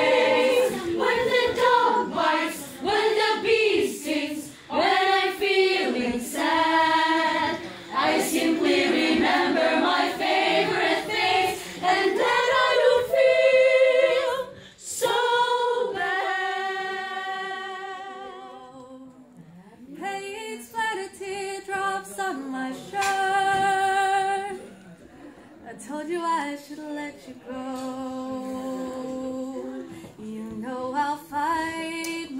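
Children's choir singing a cappella in parts. The singing is full and loud at first, then grows quieter past the middle, with long held notes.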